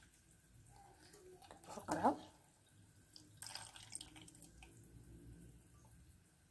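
Oil poured from a pan into a glass jar, a faint trickle with drips as the stream thins out.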